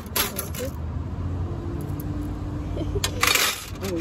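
Metal skewers clinking and rattling against each other in two short bursts, one at the start and another about three seconds in.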